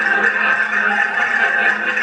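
Accordion playing a folk dance tune, a dense run of held reedy chords without a break.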